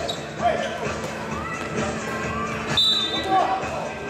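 Basketball game in a gym: players' voices calling out amid the bounce of the ball and the thud of shoes on the court, echoing in the large hall.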